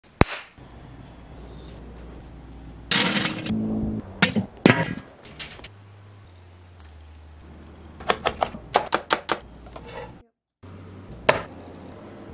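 Close-up kitchen food-preparation sounds in quick cuts, no speech. A sharp knock comes at the start, a loud burst of noise about three seconds in, and a quick run of sharp knocks and clicks about eight to nine seconds in. A low steady hum runs underneath.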